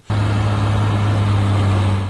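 Snowplough truck engine running steadily with a low hum and even noise, cutting in abruptly just after the start.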